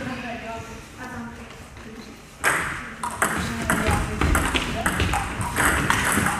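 Table tennis rally: the ball clicks back and forth off the bats and the table in quick succession, starting about two and a half seconds in, over a background of voices in the hall.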